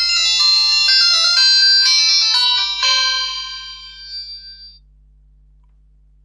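U8 smartwatch startup chime: a short synthesized melody of stepped high tones from its small speaker, dying away after about five seconds.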